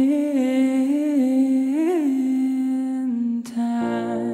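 A man's wordless sung note, held for about three seconds with a slight waver and a brief upward bend in the middle. Near the end a click and a piano chord come in.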